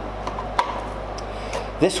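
Handling of a cartridge dispenser gun: one light click about half a second in, with a few fainter ticks, over a steady low hum.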